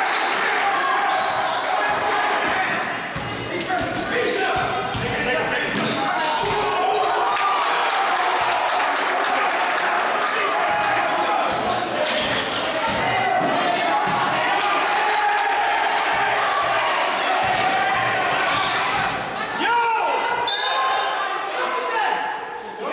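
Basketball bouncing on a gym floor during live play, with players and spectators calling out and talking across a large indoor hall.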